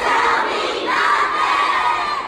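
A large crowd of young children shouting and cheering together, in two loud surges.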